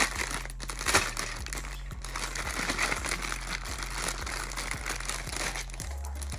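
Clear plastic packaging bag crinkling as it is handled, with a couple of sharper crackles near the start.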